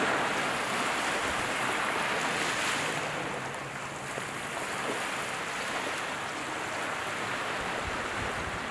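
Sea waves washing and breaking, a steady rush of surf that swells for the first few seconds and then eases a little.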